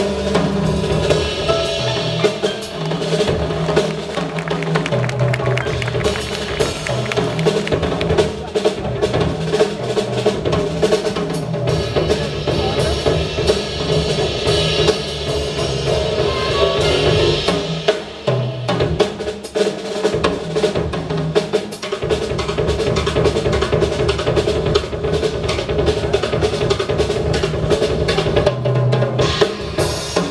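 Live jazz played on acoustic piano, upright double bass and a Yamaha drum kit, with the drums and cymbals to the fore throughout.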